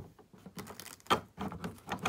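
Molded plastic packaging tray being handled as a die-cast model airliner is worked out of it: an irregular run of crackles and clicks, with a sharper crack about a second in.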